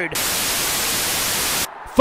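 A burst of TV-style static hiss, steady for about a second and a half, that starts and cuts off abruptly: an edited-in static sound effect marking a cut between clips.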